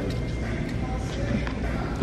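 Store background: faint chatter from other voices over a steady low rumble, with no distinct event standing out.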